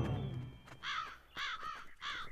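A held music chord fades out, then a crow caws three short times, used as a cartoon sound effect.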